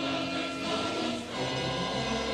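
Chorus singing with orchestra in a live performance of a dramatic cantata, steady and sustained.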